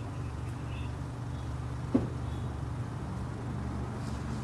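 Steady low hum of idling vehicle engines, with a single sharp knock about two seconds in.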